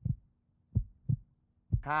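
Heartbeat sound effect, a low double thump repeating about once a second, played as tension under a button-press countdown. A man's voice counts 'hai' near the end.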